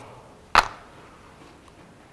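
A single sharp knock about half a second in, the loudest sound here, followed by faint room tone.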